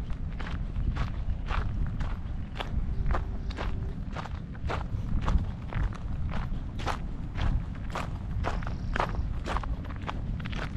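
Footsteps of a hiker walking on a dirt and gravel trail, a crunching step about twice a second, over a low, uneven rumble.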